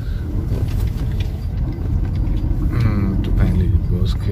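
Low, steady engine and road rumble of a car heard from inside the cabin while driving slowly, with a brief voice about three seconds in.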